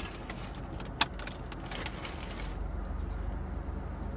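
Steady low rumble of a car's engine idling, heard inside the cabin with the heater running. A light crinkle of the paper wrapper in the first half, and one sharp click about a second in.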